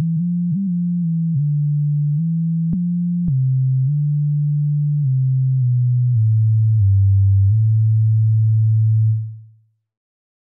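Sub-bass sine-wave synth tone from UVI Falcon 3's 'Sub Sine City' preset, played as a slow line of single low notes that mostly step downward. Two brief clicks come about three seconds in. The final deep note is held, then fades out a little after nine seconds.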